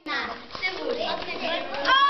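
Children's voices talking and calling over one another at play. Near the end, one voice rises into a long held shout.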